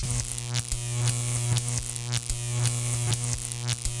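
Electric buzzing sound effect: a steady low hum with frequent irregular crackling clicks, like sparking static.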